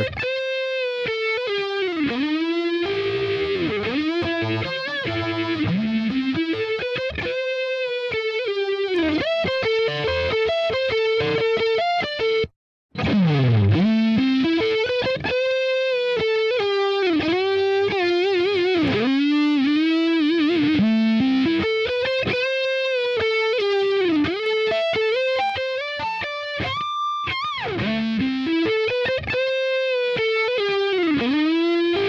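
Distorted electric lead guitar playing a melody through the Inktomi plugin's phaser, with notches that sweep up and down through its tone. The sound cuts out for about half a second a little before the middle.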